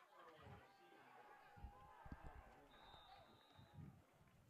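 Faint sound of a live high school football play: scattered distant voices from players and crowd, a few dull thuds, and a steady high whistle blast lasting about a second in the second half, the referee's whistle blowing the play dead after the tackle.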